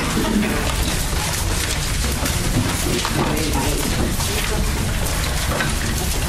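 A group leafing through Bibles to find a passage: a steady rustling hiss of turning paper pages, with faint low voices murmuring in the background.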